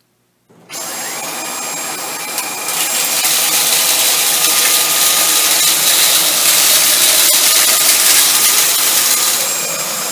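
Dyson cordless stick vacuum with its soft roller cleaner head, in low power mode, starting up about half a second in with a motor whine that rises slightly. It runs steadily over tile, louder from about three seconds in while it picks up a line of ground Fruit Loops, chili flakes, flax seeds and peas, and easing a little near the end.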